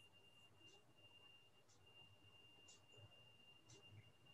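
Near silence: faint room tone with a thin, steady high-pitched whine and a faint tick about once a second.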